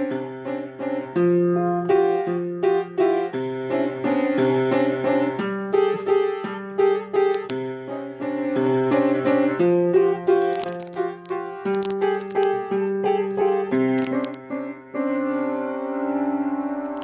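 Piano playing a simple chord progression: chords with the bass note changing about every second or so, with a moving line of notes on top, ending on a held chord.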